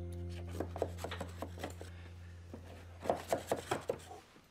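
A metal loaf tin being handled with oven mitts on a wooden cutting board: a run of light knocks and clicks, with a quicker cluster of sharper knocks about three seconds in.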